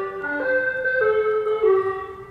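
Ice cream van playing its jingle: a simple tune of held, organ-like electronic notes stepping up and down.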